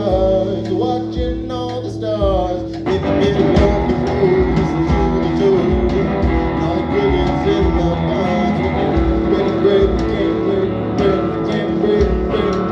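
A two-piece rock band playing live: an electric guitar through an amplifier and a drum kit, in a stretch without vocals. Bending guitar notes sound over a steady kick drum for the first few seconds, then the guitar and drums thicken and get louder about three seconds in.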